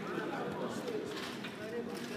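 Indistinct chatter of voices around a roulette table, with a faint clack of plastic gaming chips a little over a second in as the dealer gathers chips off the layout.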